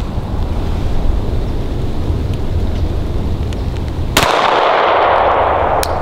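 Wind rumbling on the microphone, then a single Glock 19 9 mm pistol shot about four seconds in, its report trailing off over nearly two seconds.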